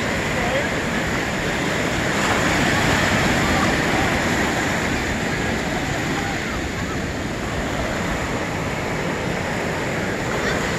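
Ocean surf breaking and washing in at the shoreline, a steady rushing noise that swells a little a couple of seconds in.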